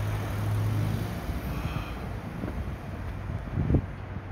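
Street traffic ambience: a motor vehicle's low hum is loudest in the first second or two, then eases. Wind buffets the phone's microphone in two short gusts near the end, the second the loudest moment.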